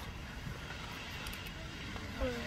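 Old Faithful geyser erupting, a steady rushing hiss from its steam column, mixed with a low fluttering rumble of wind on the microphone.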